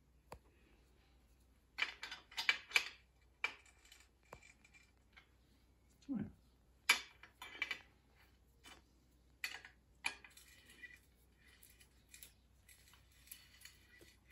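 Steel spanners clinking and scraping on the bolts of a metal A-frame stand as the bolts are tightened. The result is irregular sharp metallic clicks that come in quick runs.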